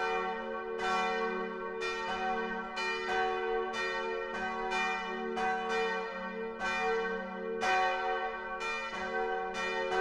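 Bells ringing in a continuous peal, one or two strikes a second, each strike ringing on under the next.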